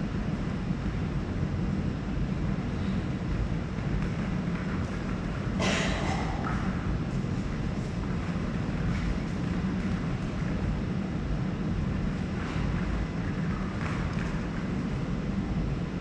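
Steady low rumbling background noise, with a few brief scuffs or sharp sounds, the clearest about six seconds in.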